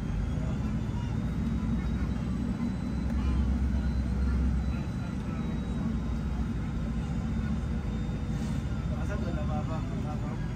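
Volare minibus driving, its engine and road rumble heard from inside the cabin, swelling slightly between about three and five seconds in.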